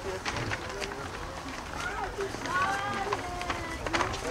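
Young children's high-pitched voices calling and chattering, too indistinct for words, with scattered light knocks and a low outdoor rumble.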